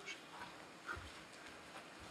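Faint footsteps on a stage floor: a few soft, scattered knocks, the clearest a low thud about a second in.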